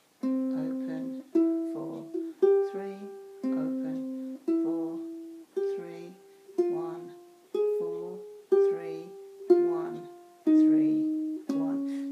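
Low-G tuned ukulele playing a slow single-note flamenco-style melody. It picks out roughly one ringing note a second, each dying away before the next, with softer, quicker low notes in between.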